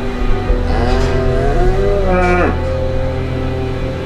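A Holstein dairy cow mooing once, a long call of about two seconds that rises and then drops away sharply at the end. It is a mother cow bellowing for her calf, which has been taken from her.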